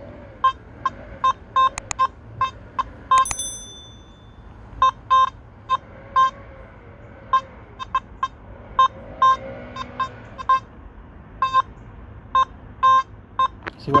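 Nokta Makro Simplex+ metal detector with the SP24 coil sounding short target-tone beeps, several a second in irregular clusters, as the coil is swept back and forth over a target. The response comes and goes, a fluctuating signal. There is a single higher-pitched beep about three seconds in.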